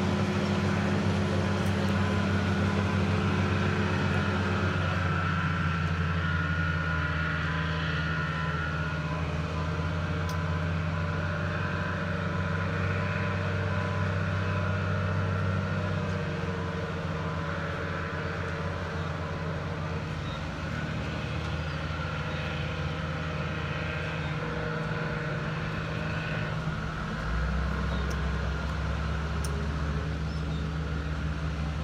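Engines of heavy earth-moving equipment (wheel loader, bulldozer, dump trucks) running as a steady low drone, shifting in pitch a few times.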